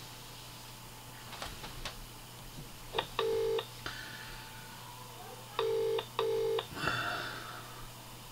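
British telephone ringing tone heard through a phone's speaker as an outgoing call rings out: one short burst about three seconds in, then the double burst of the UK ring cadence a couple of seconds later. A few faint clicks come before it, and a brief rustle of line noise follows near the end as the call is picked up.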